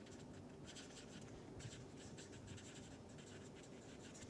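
Felt-tip permanent marker writing on paper: faint, irregular scratchy strokes as the words are written out.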